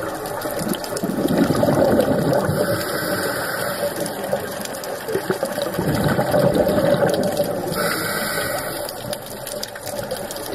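A scuba diver's regulator heard underwater: twice, a long bubbling exhalation followed by a shorter hiss of inhalation.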